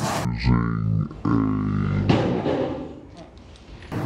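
A man's voice, a couple of drawn-out low spoken sounds that the transcript did not catch, then a short rustle about two seconds in and a quieter stretch near the end.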